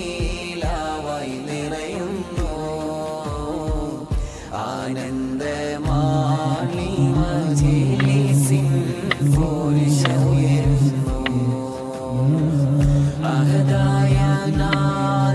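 A man's voice chanting a slow devotional melody with long, drawn-out held notes, growing louder and more sustained about halfway through.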